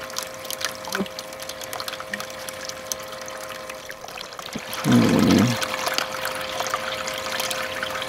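Water running steadily down a VDR mini sluice box over its vortex riffle mat, with a steady hum from the small water pump feeding it. A short, louder low sound breaks in about five seconds in.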